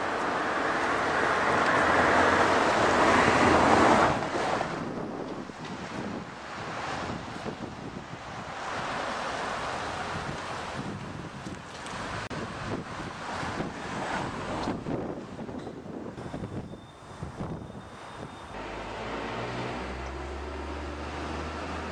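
Outdoor street noise with wind rumbling on the camera microphone and passing traffic. It is loudest over the first four seconds, then drops suddenly to a lower, uneven hiss.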